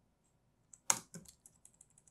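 Computer keyboard typing: one sharp keystroke about a second in, followed by a few lighter key clicks.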